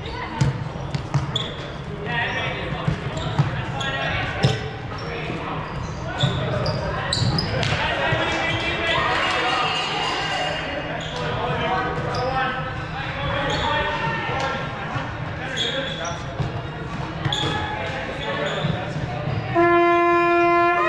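Indoor gym game sounds: sneakers squeaking in short high chirps on the hardwood floor, with players' shouts and chatter echoing in a large hall throughout.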